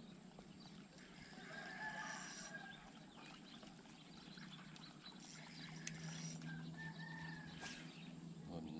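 Faint distant bird calls, heard twice: about two seconds in and again near the end, over a quiet outdoor background with a low steady hum.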